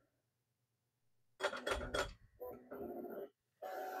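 Flashforge AD5X 3D printer working on resume: starting about a second and a half in, a quick run of clicks and clatter, then a steady whir from the stepper motors as the toolhead moves.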